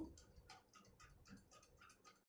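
Near silence: faint room tone with light, rapid ticks, about four a second.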